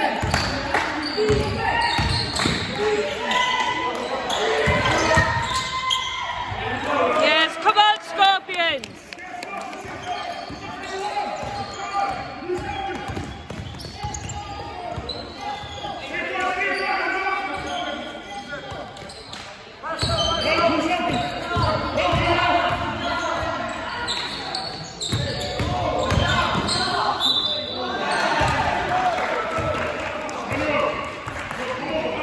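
Basketball bouncing on a wooden sports-hall floor, repeated knocks echoing in the large hall, under indistinct voices from players and spectators. About seven to eight seconds in, a cluster of sharp shoe squeaks on the court is the loudest moment.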